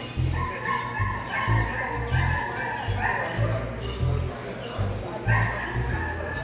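Small dog barking several times in short, high barks, over background music with a steady beat.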